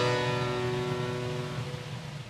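A harpsichord chord dying away slowly after being struck, its notes fading with no new chord. It is the closing cadence of the slow Largo movement.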